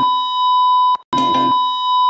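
A steady, high electronic beep tone, loud. It cuts off just before a second in and starts again after a very brief gap. Low background music fades under it at first and comes back with it on the restart.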